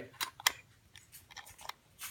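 Handling noise from a wooden box and the papers inside it: about five short, sharp clicks spread over two seconds, with faint rustling between them.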